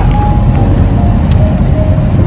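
Steady low rumble inside a moving car's cabin: road and engine noise.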